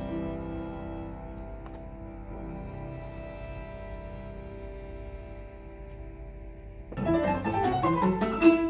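Piano trio of violin, cello and grand piano playing classical chamber music live: soft held notes that slowly fade, then about seven seconds in the trio comes in loudly with faster, busier playing.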